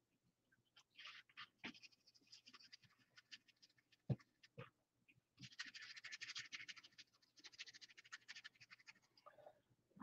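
Faint, rapid scratching of a paintbrush being worked on a palette and paper towel, loading and wiping off white paint for dry brushing, with a single light tap about four seconds in.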